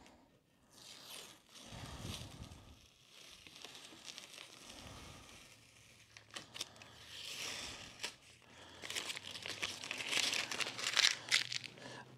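Blue masking tape being peeled off an acrylic sheet and crumpled into a ball: soft crinkling and tearing, busiest and loudest in the second half.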